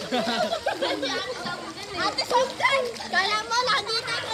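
Several children and teenagers laughing and calling out as they play together in a pool.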